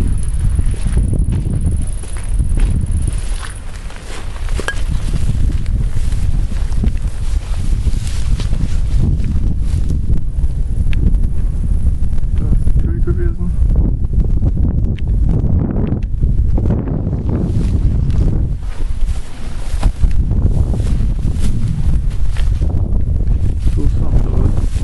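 Wind buffeting a handheld camera's microphone: a loud, gusting low rumble that rises and falls, dipping briefly a few seconds in.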